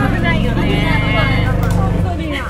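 Golf cart rumbling steadily as it rides along, a dense low drone with a fine flutter, under women's voices.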